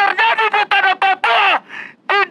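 A single voice shouting slogans in quick, high-pitched syllables, phrase after phrase with short breaks between them.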